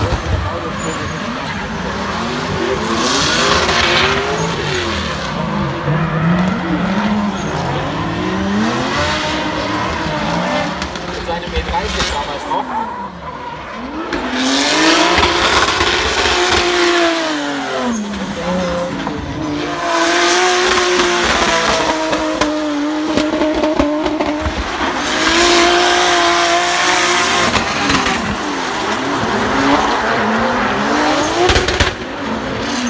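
Drift car with a Toyota 2JZ straight-six engine sliding under power, its revs swinging up and down in repeated sweeps and held steadier in the later part, with tyres squealing through the slides.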